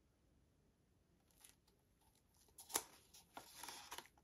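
Faint clicks and scraping of a wooden stir stick against the inside of a paper cup as the last of the paint is scraped out, starting about a second in, with one sharp tick a little under three seconds in.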